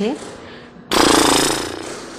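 A raspberry blown with vibrating lips: a loud, rough buzz starting about a second in and fading away over about a second.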